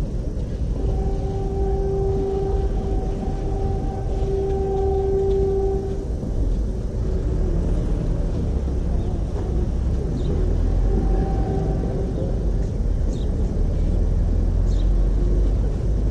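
Steady low rumble of outdoor background noise, with a humming tone heard for about five seconds near the start and briefly again past the middle.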